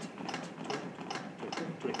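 CPR training manikin clicking with each chest compression as an adult's chest is pressed: a quick, even series of sharp clicks, several a second.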